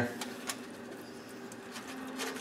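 A silicone basting brush dabs oil-based spice rub onto a raw pork loin, quietly. Under it runs a faint steady hum, and there is a light click about half a second in.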